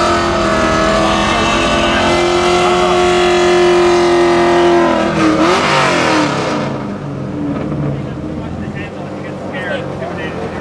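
Drift car engines idling loudly, with a steady held tone, then a brief rev about five seconds in; the sound drops and quietens just before seven seconds.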